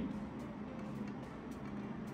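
Faint light clicks of small plastic dominoes being set upright by hand on a plastic staircase piece, over a low steady hum.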